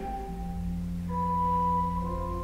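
Church organ playing soft, sustained held notes: a low note enters near the start and higher notes join about a second in.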